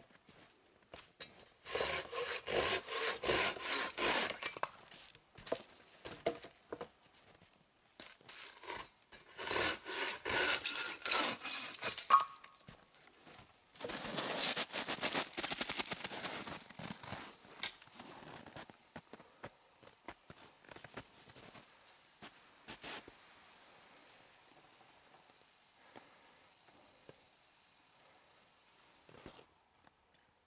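Folding pruning saw with coarse teeth cutting through a dead branch by hand. It comes in two runs of quick back-and-forth strokes, about four a second: one a couple of seconds in, one around the middle. A softer scraping stretch follows before it dies away.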